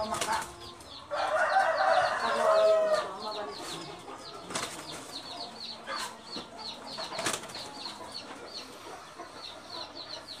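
Chickens calling in the yard, with one loud clucking call about one to three seconds in and short high cheeps repeating a few times a second throughout. A few sharp knocks sound in between.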